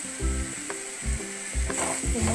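Food sizzling in a frying pan as it is stirred, with a few dull knocks.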